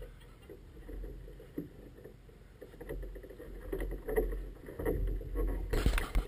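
Low wind rumble on the microphone over water sloshing and small irregular knocks around a small boat tied up at a dock, growing busier in the second half. Near the end come loud rubbing and scraping sounds as the camera is picked up and handled.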